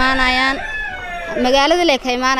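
Rooster crowing twice: one long, loud crow ending about half a second in, then a second crow rising in pitch near the end.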